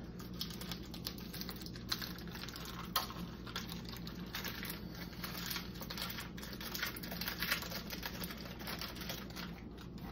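Crinkling and crackling of a small plastic or foil packet being handled and opened by hand, irregular clicks with a few sharper snaps, over a steady low hum.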